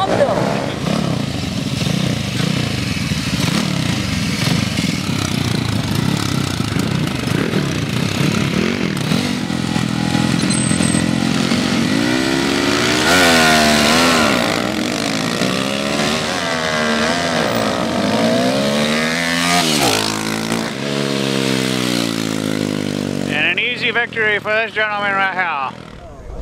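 Small racing scooter engines running, then revved again and again from about ten seconds in, the pitch climbing and dropping with each rev.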